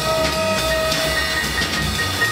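Free-jazz quintet playing live: a horn holds one long steady note that stops about a second and a half in, over drums, cymbals and bass.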